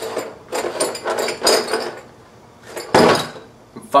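Cardboard beer carton handled and put down, with one loud thump about three seconds in. Some indistinct mumbling comes before it.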